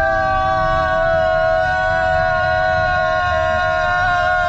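A person screaming one long, unbroken, high-pitched note held at a steady pitch, drawn out as long as possible in a who-can-scream-longest contest.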